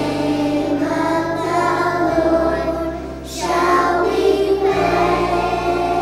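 A group of young pre-kindergarten and kindergarten children singing a praise and worship song together, over steady low accompaniment notes that change twice.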